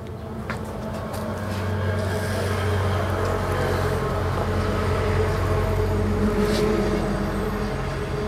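A steady low mechanical hum, like a motor or engine running, with several steady pitched tones. It swells over the first few seconds and then holds.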